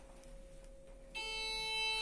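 KLEEMANN passenger lift's electronic arrival beep: one steady tone starting abruptly about a second in and lasting about a second, over a faint steady hum in the car.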